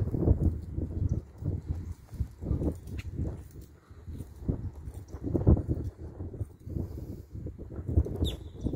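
Footsteps of the person filming, soft low thuds at about two a second with uneven spacing.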